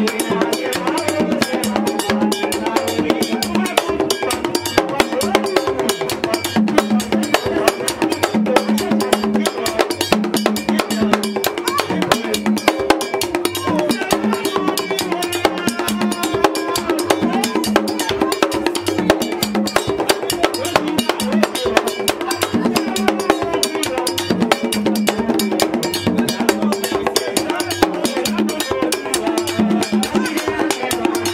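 Haitian Vodou ceremonial music: fast, steady hand-drumming with a singer's voice over a microphone, kept up without a break.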